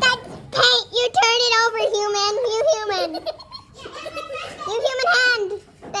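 A child's high-pitched laughter in long wavering peals: one starting about a second in and lasting some two seconds, and a shorter one about five seconds in.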